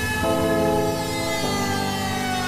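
Electronic hardcore music from a DJ mix in a breakdown: sustained synth chords without a beat, changing chord twice, with one high tone slowly falling in pitch.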